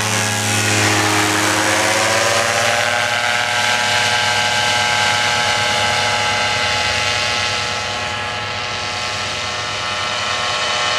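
Paramotor engine and propeller on a wheeled paraglider trike running at full power during takeoff, passing close by. Its pitch dips and then rises again about three seconds in, holds steady, and grows a little fainter as the trike climbs away.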